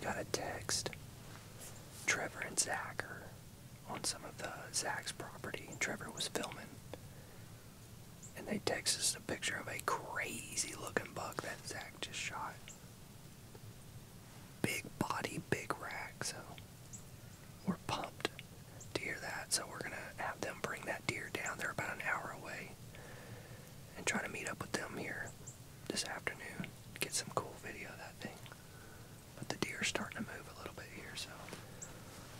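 A man whispering in short phrases with brief pauses between them.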